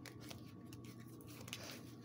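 Faint rustling and light clicks of oracle cards being handled, over a steady low electrical hum.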